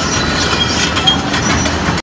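Heavy quarry machinery running close by, a loud steady mechanical noise with metallic clattering and faint high squeals.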